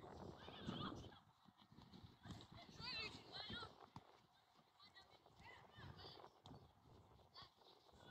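Faint, distant shouts and calls of children playing football, with a few short soft thuds of kicks or footfalls.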